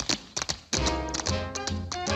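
Tap shoes clicking in quick, separate taps, then about three-quarters of a second in, big band music comes in with a steady low beat and held tones.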